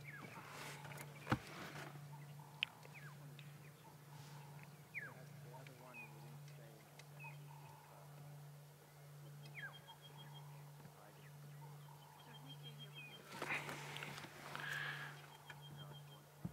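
Faint outdoor ambience: scattered short bird chirps and a repeated high trill over a steady low hum, with a brief louder, noisier stretch near the end.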